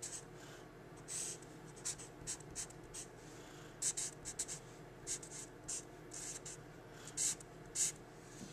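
Felt-tip marker writing on paper: a run of short, irregular, high-pitched strokes of the tip across the page as an equation is written out, with two louder strokes near the end.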